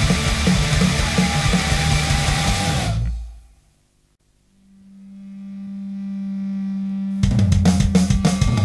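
Punk rock band playing with drums and distorted guitars until the song stops about three seconds in, leaving a second of near silence. The next song opens with one steady held note swelling up, and the full band with drums comes in near the end.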